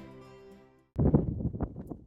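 Soft guitar background music fades out just under a second in. It is followed by wind buffeting the microphone: a loud, uneven low rumble.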